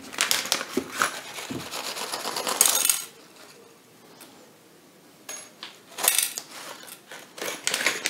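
Small metal hardware clinking and rattling as it is handled on a workbench: a dense clatter for about the first three seconds, then a few separate clicks and knocks.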